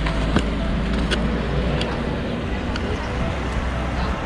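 Roadside ambience: a steady low rumble with a few brief clicks.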